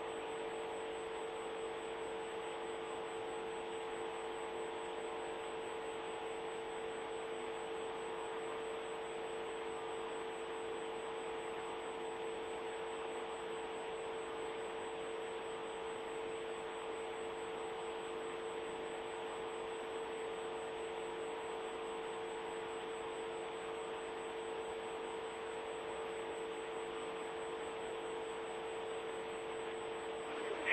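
Steady hiss on an open broadcast audio line, with a constant hum made of a strong low tone and several fainter higher ones. The hiss stops above a narrow upper limit, like a phone or radio line. The line stays steady and unchanged throughout, with no voice on it.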